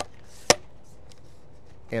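A single sharp click-knock from a K&F Concept carbon fibre tripod's leg as it is moved into position, about half a second in.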